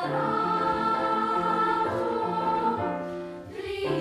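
Children's choir singing held notes in a phrase. The sound dips briefly near the end, then the voices come in again.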